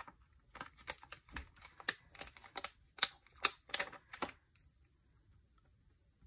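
Plastic sticker sheet being handled and a sticker peeled from it: a quick run of small clicks and crackles that stops about four seconds in.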